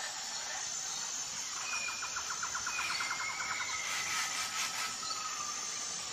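Nature ambience: insects chirring steadily throughout, with birds calling over them, a rapid trill about a second and a half in, followed by several long whistled notes that slide gently downward.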